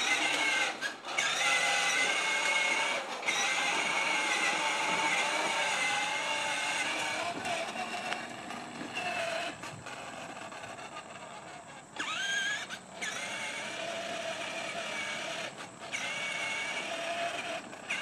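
Battery-powered children's ride-on toy quad running, its electric motor and gearbox whining steadily as the plastic wheels roll over asphalt. The whine drops out briefly a few times and rises in pitch about twelve seconds in.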